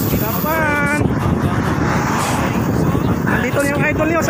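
Wind rushing over the microphone and highway traffic noise while riding a bicycle, with a voice calling out briefly about half a second in and again near the end.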